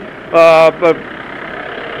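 A short spoken syllable, then a steady low hum of street traffic in the pause.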